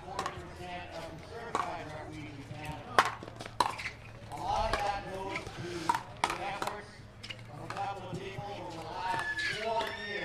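Pickleball paddles striking a hard plastic pickleball during a rally: a series of sharp pops at uneven intervals, the loudest about three seconds in.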